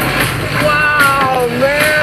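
A man's long drawn-out "wooow" exclamation, its pitch dipping and then rising again, over the steady low rumble of a small homemade car driving on a bumpy dirt road.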